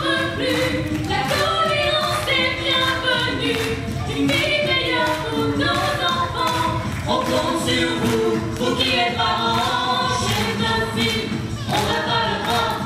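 A mixed group of men's and women's voices singing a song together as a choir.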